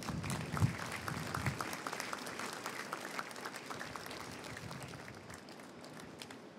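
An audience applauding, the clapping dying away gradually.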